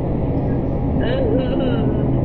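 A steady low hum runs throughout. About a second in, a woman's voice makes a short wavering wordless vocal sound lasting about a second.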